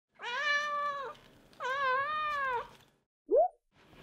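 A cat meowing twice, each meow long and held at a fairly steady pitch, then a short upward-sliding squeak near the end.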